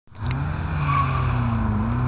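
Opel Corsa's engine running steadily as the car drives a slalom course between cones.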